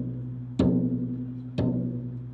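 Bass drum struck with a soft-headed mallet at a slow, even beat of about one stroke a second: two deep booms, each ringing on under the next.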